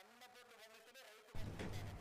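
Near silence with faint traces of music, then about a second and a half in a faint, steady electrical hum switches on abruptly, the buzz of a studio audio line being opened.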